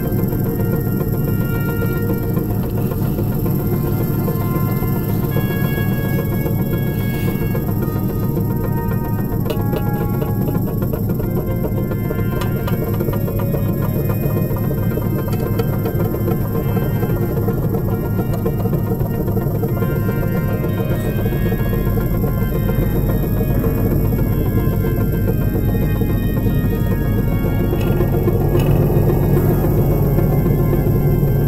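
Experimental drone music: a dense, steady low drone with short held tones scattered above it. A deeper bass layer swells in about two-thirds of the way through.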